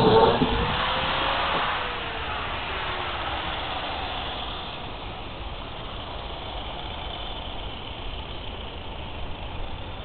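A motor sound, its tone falling in pitch and fading over the first few seconds, then a steady background hiss.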